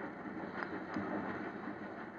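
Faint steady hiss with a few scattered soft clicks: surface noise of a vinyl record playing in a gap between narrated lines.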